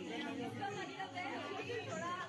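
A group of people chattering, with several voices overlapping.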